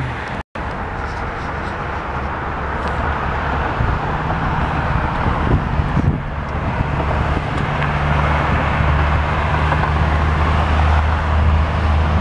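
Road traffic on a busy multi-lane highway below: a steady wash of tyre and engine noise, with a deep engine drone that builds from about four seconds in as a tractor-trailer approaches. The sound cuts out for a moment about half a second in.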